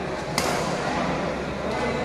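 A badminton racket strikes a shuttlecock once, a sharp crack about a third of a second in with a short echo in the hall, over steady background voices.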